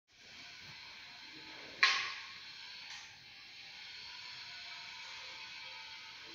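Steady hiss, with a sharp knock about two seconds in that rings out briefly, and a fainter knock a second later.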